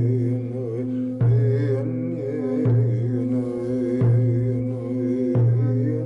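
Brass singing bowl struck with a wooden mallet four times, about every second and a half, each strike ringing on into the next, with a steady ringing tone under it. A voice chants over the bowl, its pitch wavering.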